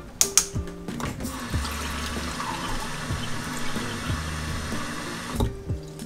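Kitchen tap running into a stainless-steel sink for about four seconds, a steady hiss that stops with a knock near the end. Two sharp clicks come just before the water starts.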